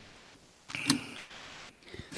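A single faint, brief click about a second in, against low background noise.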